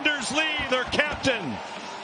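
A male play-by-play commentator calling an ice hockey goal in an excited, raised voice.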